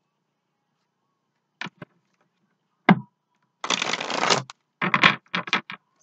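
Tarot cards being handled and shuffled: a sharp tap about three seconds in, then about a second of riffling cards, followed by a few quick flicks and clicks of the cards.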